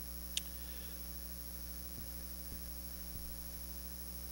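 Steady electrical mains hum, with a single brief click about half a second in.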